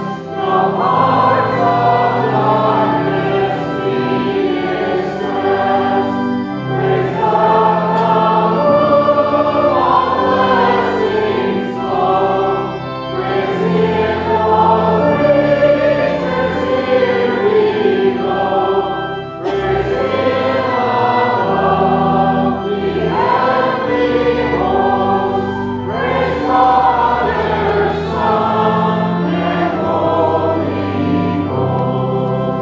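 Many voices singing a hymn together over held organ chords, in phrases broken by short breath pauses every six or seven seconds.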